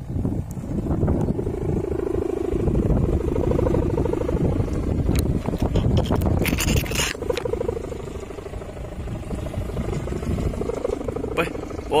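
Wind rumbling on the microphone with a rapid fluttering buzz from a large kite's sail flapping as it is launched and climbs. A brief shout about six and a half seconds in.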